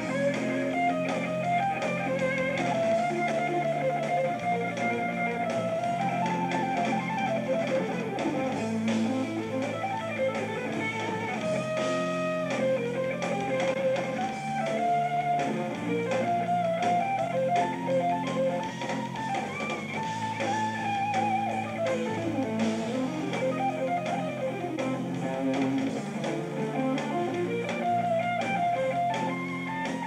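Live rock band playing: electric guitar lead lines over bass guitar and drums, steady and continuous.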